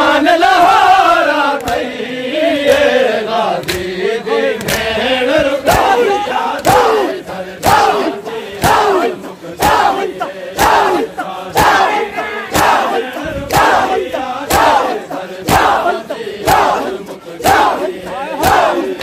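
A crowd of men chanting a noha in unison. From about five seconds in, matam joins it: hands slapping bare chests in a steady beat of about one heavy slap a second, with lighter slaps between, in time with the chant.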